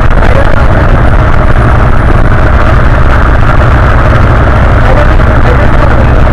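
Bus engine and road noise heard from inside the passenger cabin: a loud, steady low rumble.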